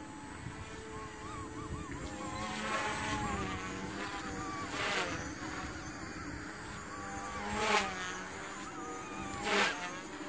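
XK K130 RC helicopter flying at a distance: a thin buzzing whine from its rotors and motors that wavers up and down in pitch as the pilot works the controls, swelling briefly a few times. The tail rotor is the loud, high part of it.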